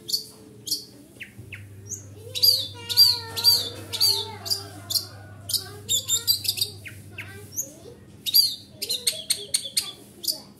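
Caged long-tailed shrike singing: rapid runs of short, sharp, high chattering notes in bursts, loudest about two to four seconds in and again near the end. A faint low hum runs under the middle of it.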